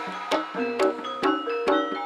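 Javanese gamelan-style music: struck metal keys ring sustained notes while a drum or beater strikes about every 0.4 s in an even rhythm.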